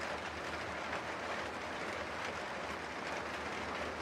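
Steady rain falling, an even hiss with a low hum underneath.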